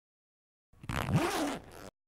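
Backpack zipper drawn along in a single stroke, starting just under a second in and lasting about a second before cutting off suddenly.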